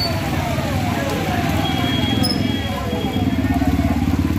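Motorcycle and car engines running close by in slow street traffic on a wet road, with a rapid low pulsing that grows stronger near the end, and people's voices mixed in.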